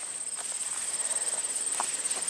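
A steady, high-pitched pulsing insect trill, with a few faint soft footsteps or rustles.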